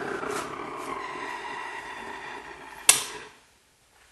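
Homemade propane burner running, a steady rushing hiss of the flame with a faint tone in it that slowly weakens. A single sharp click comes about three seconds in, and the sound then cuts off.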